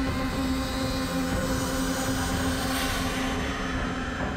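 Dramatic suspense background score: a sustained droning bed of held low tones that swells and brightens around the middle.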